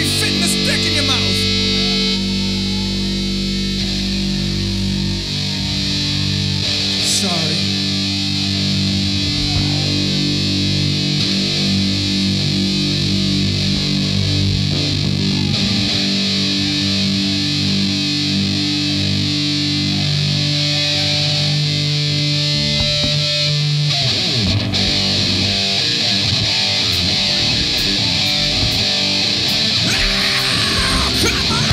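Distorted electric guitars and bass holding long, ringing sustained chords, changing about two seconds in and again near the end, as a heavy metal band's song opens on stage.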